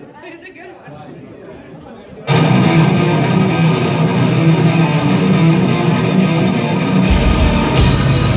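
Live heavy rock band starting a song. After about two seconds of low crowd murmur, loud distorted electric guitar comes in suddenly, and near the end a heavy low end of bass and drums joins it.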